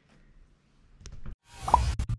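Silence for about a second, then a click and short pop-like sound effects with a swoosh that builds near the end, the start of an animated logo outro.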